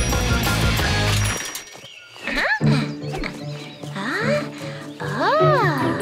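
A loud rock-guitar music cue cuts off about a second in. Softer background music follows, under three wordless vocal sounds that rise and fall in pitch, animal-like cartoon character noises.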